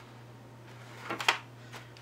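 Brief crinkle of pleated, accordion-folded paper handled in the hands, a few quick rustles about a second in, over a low steady hum.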